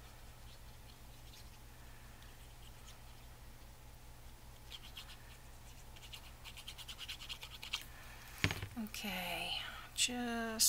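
Rapid, light scratching of a fine-tip plastic glue bottle's nozzle dragged across the back of a paper die cut, starting about halfway through. A sharp knock follows as the bottle is set down, then a brief murmur of voice near the end.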